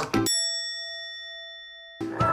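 Background music breaks off and a single bell-like ding rings out, fading slowly: an edited-in chime sound effect.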